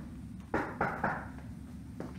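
Three quick taps or knocks, about a quarter of a second apart, over a steady low hum.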